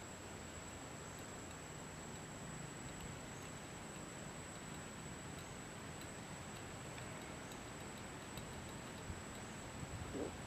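Quiet outdoor background: a steady hiss with a thin, high-pitched whine, faint scattered ticks, and a soft knock near the end.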